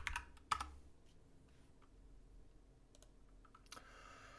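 Typing on a computer keyboard: a few keystrokes in the first half-second, then a quiet stretch with a few faint key clicks near the end.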